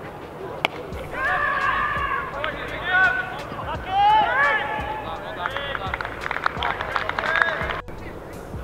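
A single sharp knock of cricket bat on ball, then several players shouting and calling out across the field, with a run of short claps near the end.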